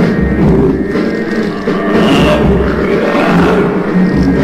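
Instrumental interlude of a Vietnamese song, with a steady bass beat about once a second. A swelling, rushing sound rises in the middle.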